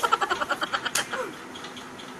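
A woman's rapid, pulsing laugh, about a dozen pulses a second, fading out about a second in.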